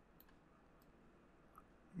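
Near silence with a few faint, short clicks of a computer mouse.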